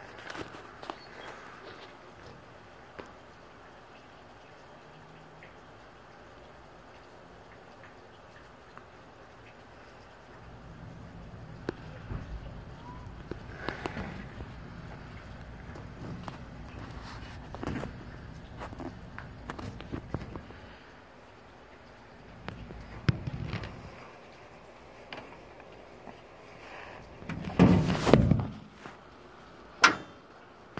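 Scotsman ice machine restarting after being switched back on. A low hum starts about ten seconds in and runs for about ten seconds, with scattered clicks. Near the end come a few louder knocks.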